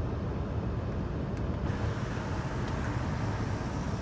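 Steady low hum and hiss inside the 2021 Kia Sorento's cabin, with no distinct tone or click.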